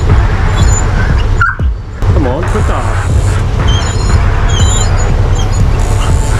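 A dog whining and yelping in wavering high-pitched cries over a steady loud low rumble. There is a short break in the rumble about a second and a half in.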